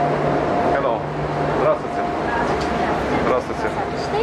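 Steady mechanical hum with a held high tone that drops out briefly and returns, under other people's voices talking.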